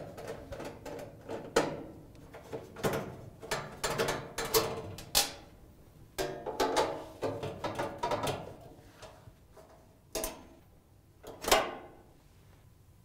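Thin sheet-metal dryer shield rattling, scraping and clanking against the cabinet as it is worked loose by hand, with short metallic ringing and a couple of sharper knocks near the end as it comes free.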